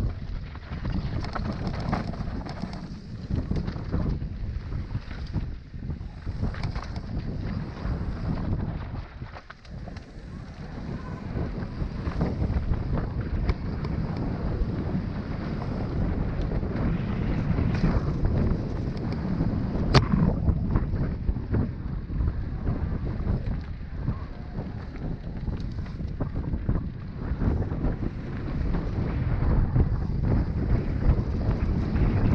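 Wind buffeting the microphone over the rumble and rattle of a mountain bike rolling fast down a rough dirt trail, with many small knocks from bumps and rocks. One sharp click about two-thirds of the way through.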